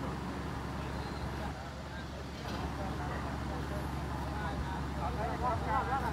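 Street sound of vehicle traffic: a steady low engine hum, with people talking, their voices louder near the end.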